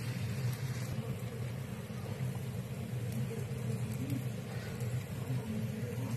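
Chicken and bacon frying in oil on a homemade sheet-metal skillet over hot plates: a steady sizzle over a constant low hum.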